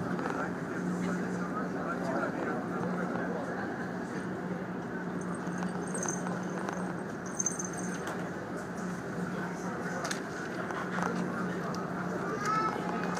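Ferry's engines giving a steady low hum, under indistinct murmur of passengers' voices.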